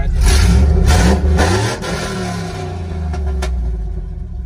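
Pickup truck engine revving up sharply, its pitch rising, then dropping back to a quieter, steadier run for the rest of the time.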